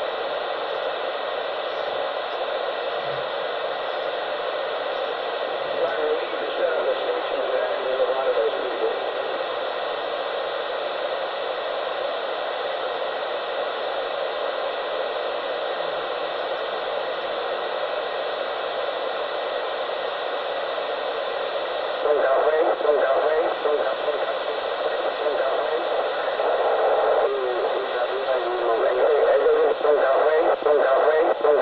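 Steady, narrow-band hiss like radio static, with indistinct voices coming through it about six seconds in and again from about twenty-two seconds on, louder there.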